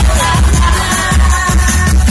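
Loud pop dance music with a heavy pulsing bass and held melody notes above it, played for joget dancing.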